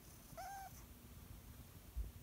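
A domestic cat giving one brief, quiet mew about half a second in.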